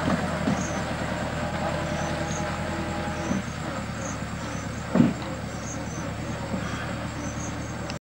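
Engine of a small farm tractor pulling a trailer, running steadily and slowly growing fainter as it moves away. There is a single loud thump about five seconds in.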